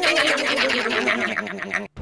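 A high-pitched, sped-up cartoon voice laughing in a long, rapid run of even pulses that slowly falls in pitch, then cuts off abruptly just before the end.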